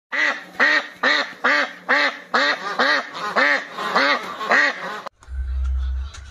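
A duck quacking in a steady series of about ten short quacks, roughly two a second, which stop abruptly about five seconds in. A low rumble follows in the last second.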